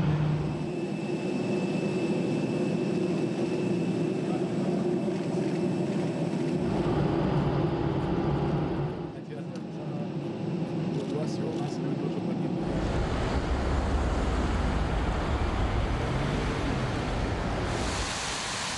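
Outdoor airport-apron ambience: a steady low hum, with voices mixed in and with breaks where the shots change. A deeper low rumble comes in from about two-thirds of the way through.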